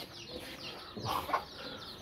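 A chicken clucking faintly, with one short call about a second in, over the soft rustle of hands mixing dry powder in a plastic bowl.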